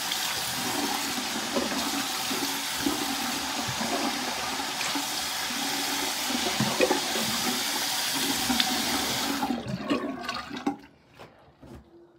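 Bathroom sink faucet running steadily into the basin, then shut off about ten seconds in.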